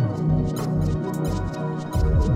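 Electronic synthesizer music made with Korg instruments: sustained pitched chords with short high ticks. The deep bass thins to short pulses with gaps, then comes back full at the very end.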